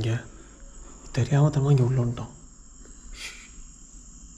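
Crickets trilling, a steady high-pitched whine that carries on under a man's voice speaking briefly in the middle, with a short hiss near the end.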